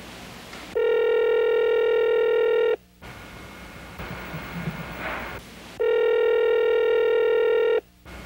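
Telephone ringing twice with an electronic ring tone, each ring lasting about two seconds, the second starting about five seconds after the first.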